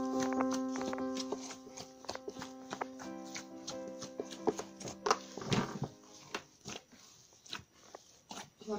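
Piano background music fading out over the first half, over irregular soft clicks, slaps and sticky squelches of hands pressing and punching down risen bread dough in a plastic bowl.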